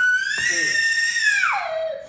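A toddler boy wailing in a tantrum at being put in timeout: one long high-pitched cry that rises, holds, then falls away near the end.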